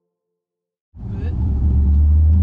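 Near silence, then about a second in a sudden cut to the steady low rumble of a car driving, its engine and road noise heard from inside the cabin.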